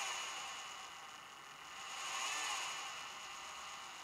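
Faint whine of a small 12 V DC gear motor running under its speed controller, swelling a little around the middle and then fading, over a steady hiss.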